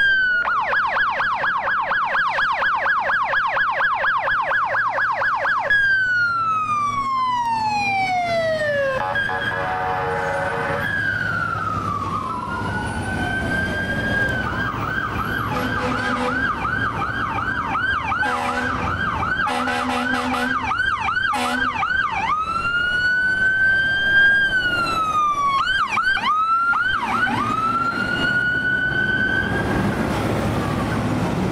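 Electronic sirens of a fire department brush patrol truck and Type 3 brush engine responding code 3. The sirens switch between a rapid yelp and long falling and rising wails. Repeated short horn blasts sound over the yelp in the middle.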